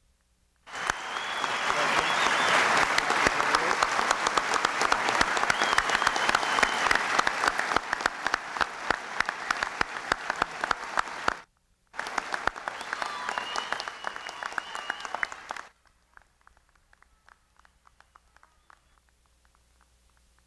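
Audience applause, dense clapping that breaks off abruptly for a moment about eleven seconds in, resumes, and cuts off suddenly a few seconds later. A faint high wavering tone sounds over it now and then.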